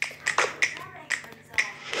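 Crisp finger snaps on a steady beat, about two a second, in a commercial's backing track.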